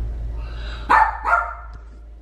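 A dog barking twice in quick succession about a second in, short sharp yaps over a low steady hum.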